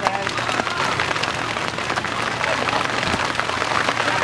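Steady patter of rain, mixed with the murmur of an outdoor crowd.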